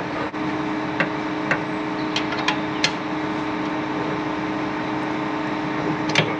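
John Deere tractor engine idling steadily, with about six sharp metallic clicks in the first three seconds as a spanner works the feed wagon's belt tensioner bolts.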